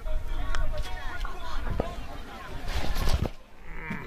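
Voices of players and onlookers calling out across a football pitch, several at once and broken up, over a low rumble on the microphone.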